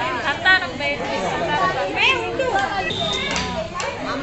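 Several people talking at once in overlapping, indistinct chatter.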